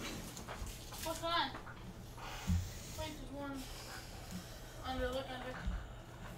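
Faint, indistinct voice from across a small room in three short stretches, with a couple of dull low thuds in between.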